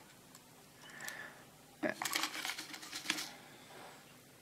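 Light clicks and rustling from handling plastic test-lead hook clips and wires on a bench, in a short cluster about two seconds in.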